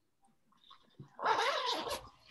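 A pet animal giving one short cry, just under a second long, just after a soft click.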